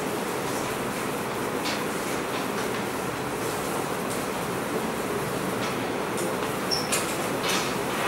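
Steady classroom background noise: an even, continuous rush with no voices, with a few faint clicks and scrapes that come more often in the second half.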